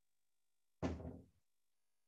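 A single sudden thud a little under a second in, dying away within about half a second, against near silence.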